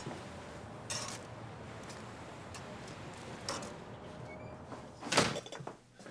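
Steady hiss and sizzle of oiled ciabatta toasting on a smoking-hot grill, with a few faint ticks. About five seconds in comes one brief, loud knock or slide.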